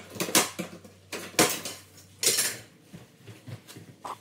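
A metal pry bar scraping and clanking against the floor as old flooring is pried up. There are three loud clattering bursts in the first two and a half seconds, then lighter clicks and scrapes.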